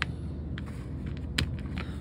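A few light clicks of the small metal parts of an airbrush's front end being taken off and set down on a cutting mat, the sharpest about one and a half seconds in, over a low steady hum.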